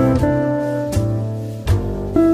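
Instrumental background music: plucked notes that start sharply and fade, over a line of low bass notes.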